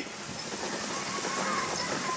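A sled dog team running on a packed snow trail: a steady hiss of the sled on the snow with faint patter of paws.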